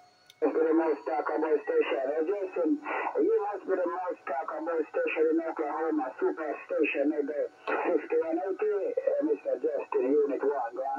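A distant station's voice received over single-sideband on the 11-metre band, coming from a Xiegu G90 HF transceiver's speaker. It is thin and narrow-band, telephone-like speech that starts about half a second in and runs on without a break.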